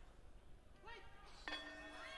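A faint short call just before a second in, then a steady ringing tone that starts abruptly about one and a half seconds in and holds unchanged.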